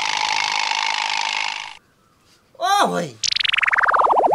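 Cartoon-style comedy sound effects. A dense buzzing sound with one steady tone cuts off suddenly just under two seconds in. After a brief silence comes a quick falling squeal, then a long, rapidly pulsing glide that drops steadily in pitch.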